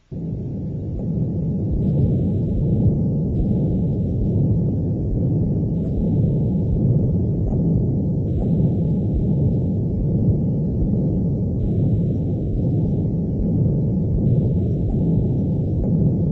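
Recorded heart sound of a Blalock-Taussig shunt: a continuous murmur, a steady low-pitched rushing sound with no gaps. It is the sign of blood flowing continuously through the surgical subclavian-artery-to-pulmonary-artery shunt.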